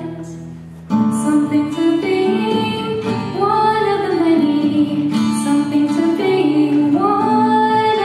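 A female vocalist singing a solo song into a microphone, accompanied on acoustic guitar. The sound dips and fades for about the first second, then voice and accompaniment come back in together and carry on as a continuous sung melody.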